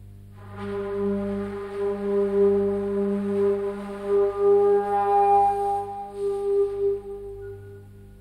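Background film music: one long held wind-instrument note over a steady low drone. The note swells in about half a second in, holds steady, and fades out near the end.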